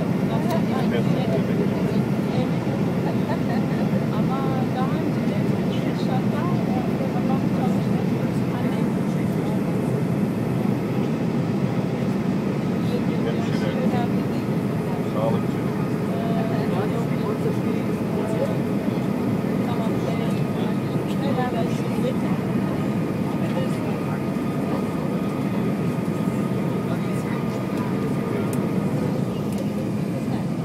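Steady low rumble of airflow and engines inside the cabin of an Airbus A320 in descent, with a faint steady whine above it. Faint passenger voices are mixed in.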